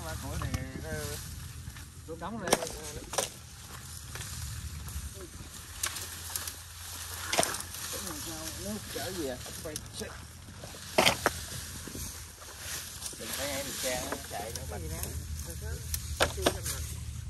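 Dry branches and brush rustling and cracking as a brush pile is pulled apart by hand, with several sharp snaps or knocks, the loudest two close together about eleven seconds in.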